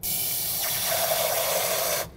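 Kitchen faucet running into a glass measuring cup, filling it with water. It starts and stops abruptly, and a steady filling note joins the rush of water about half a second in.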